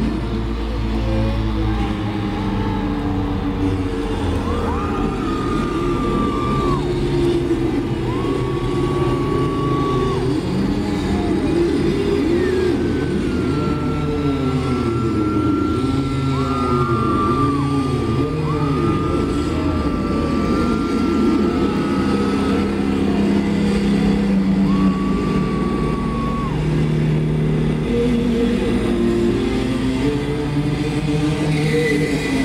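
A live rock band's distorted electric guitars, loud and noisy, with squealing feedback tones that bend up, hold and drop off several times over a thick, churning low end.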